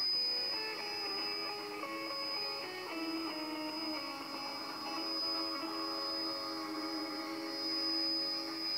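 Music from a shortwave broadcast played through the loudspeaker of an Eddystone Model 1001 receiver, with a steady high-pitched whistle running under it.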